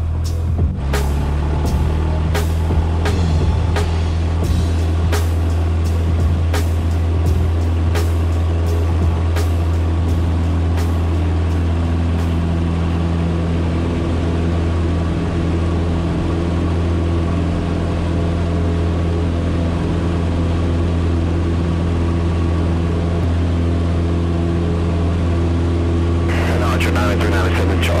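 Cessna 150's four-cylinder piston engine and propeller at full takeoff power: the steady drone rises in pitch during the first few seconds as power comes up, then holds through the takeoff roll and climb. Sharp knocks repeat through roughly the first twelve seconds, and another sound, speech or music, joins near the end.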